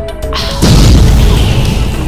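Intro music with a logo sound effect: a swish rises about a third of a second in, then a deep boom hits just after half a second and slowly dies away over the melodic music.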